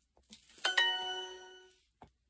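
Duolingo app's correct-answer chime: a bright ding about half a second in that rings and fades over roughly a second, signalling that the typed answer was accepted as correct.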